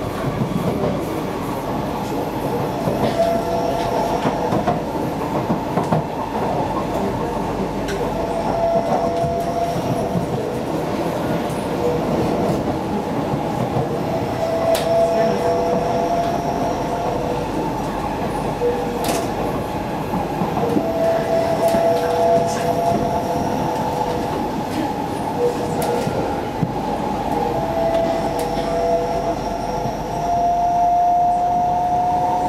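Inside a Kawasaki C151B metro train car running along the line: a steady rumble of wheels on rail, with a mid-pitched whine that keeps coming and going and an occasional sharp click.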